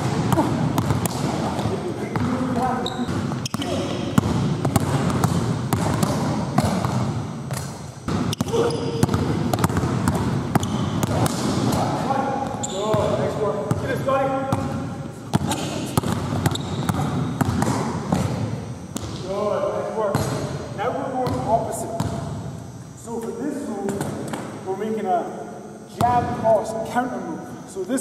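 A basketball dribbled repeatedly on a hardwood gym floor, echoing in the large hall, with indistinct voices at times.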